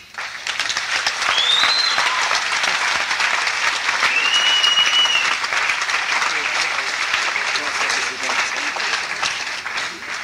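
Concert audience applauding with two whistles: a short rising one a little over a second in, and a longer, held one around four seconds in. The applause thins out toward the end.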